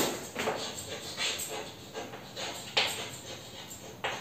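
Chalk writing on a chalkboard: a run of short scratchy strokes and taps as words are written out, the loudest stroke near the three-second mark.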